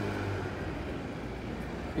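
Steady low background hum with an even noise over it, unchanging throughout.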